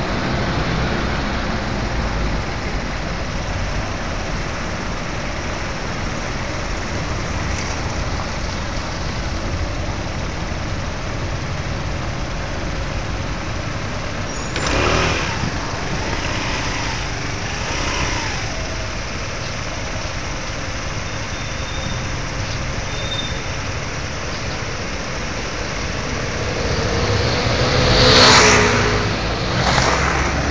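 City street traffic: a steady hum of cars and engines, with vehicles passing close by about halfway through and a louder one near the end.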